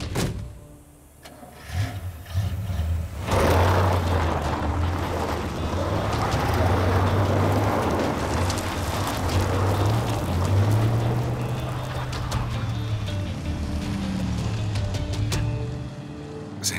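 Background music over the steady running of a motor vehicle, which comes in loud about three seconds in and holds with a low hum that wavers and rises briefly.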